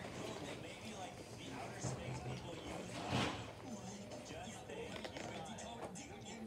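Faint background speech and music, like a television or game playing in the room, with one short loud burst of noise about three seconds in.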